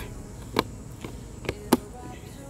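Three short plastic clicks and knocks from a motorcycle hard side case's latch and handle being worked, the last, near the end, the loudest. Cicadas buzz faintly behind.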